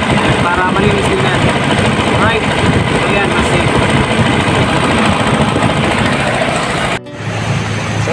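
Old jeep engine running steadily, fed by its just-repaired mechanical fuel pump. About seven seconds in, the sound drops away briefly, then a steadier low hum takes over.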